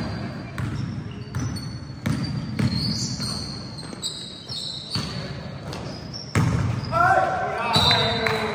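Basketball bouncing on a sports hall floor during a game, each bounce ringing in the large hall, with short high squeaks of sneakers on the court. The loudest thud comes a little after six seconds in, and players' voices shout near the end.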